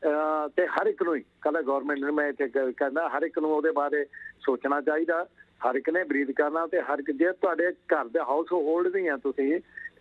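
A man talking over a telephone line, the voice thin and narrow with nothing above the phone's range. Only speech.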